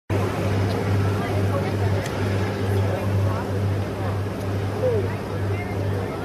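Steady low drone of a boat's engine, swelling about twice a second, with people chatting indistinctly over it.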